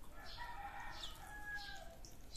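A rooster crowing once: a single call about a second and a half long that drops in pitch at the end.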